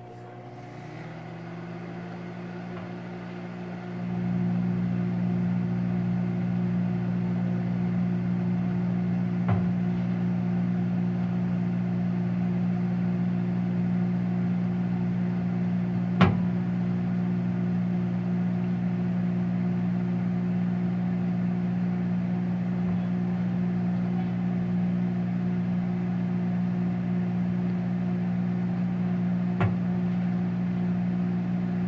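Emerson microwave oven running with snow inside, a steady electrical hum that grows louder about four seconds in and then holds even. A few single sharp clicks stand out, the loudest about sixteen seconds in, but there is no run of popping or sparking from the snow.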